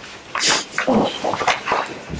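Paper sheets rustling and being shuffled at a table, with low voices.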